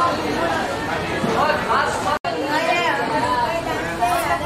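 People's voices talking, overlapping chatter, broken by a brief silent gap a little past halfway.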